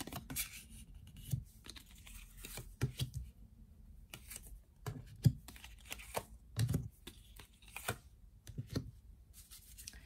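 Tarot cards being dealt and laid down one at a time on a table: a string of irregular soft taps and brief sliding brushes of card on card and on the tabletop.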